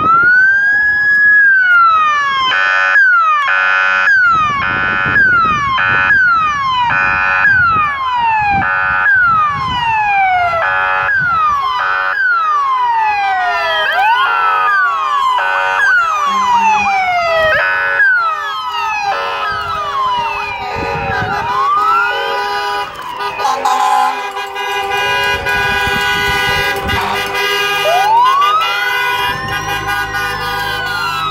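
Police car sirens sounding together as the cruisers pass: pitch sweeps falling over and over, broken by short blasts of a steady horn-like tone. Near the end a slower siren rises and falls.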